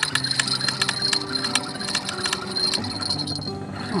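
Spinning fishing reel being wound in fast, its gears and handle giving a quick, irregular clicking while a hooked fish is played in.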